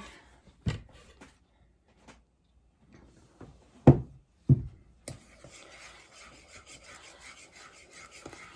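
A spoon knocking a few times against a mixing bowl, then, from about five seconds in, scraping steadily round the bowl as it stirs milk into no-bake cheesecake filling mix.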